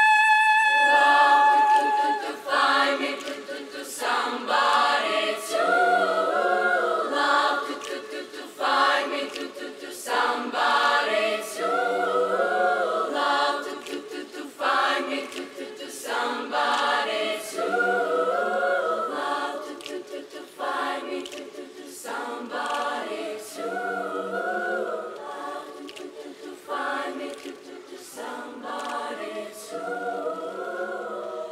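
A large girls' choir singing unaccompanied, in short phrases that repeat about every two seconds. At the very start a single girl's voice holds one long high note before the choir comes in.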